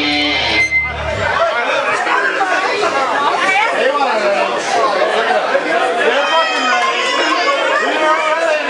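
Amplified band with heavy bass that cuts off about a second and a half in, followed by a crowd of people chatting.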